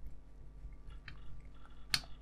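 Small screwdriver driving a tiny screw into the plastic steering housing of a scale-model chassis: faint creaking and ticking as the screw turns, with one sharper click near the end.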